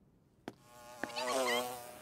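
Animated sound effect of a large flying beetle's wings buzzing, a wavering pitched drone that starts with a sharp click about half a second in and fades toward the end.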